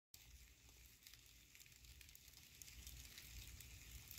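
Faint crackling of silkworms chewing mulberry leaves, barely above silence, growing a little louder toward the end.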